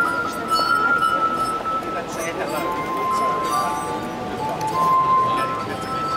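Glass harp: water-tuned stemmed glasses ringing with sustained, pure notes as wet fingertips rub their rims, playing a melody in which several notes are held and overlap.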